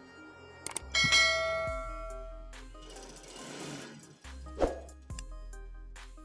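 A subscribe-button sound effect: a small click followed about a second in by a bright bell-like ding that rings and fades over about a second.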